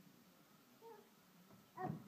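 A toddler's short, high-pitched vocal sounds over a quiet room: a brief one about a second in and a louder one near the end.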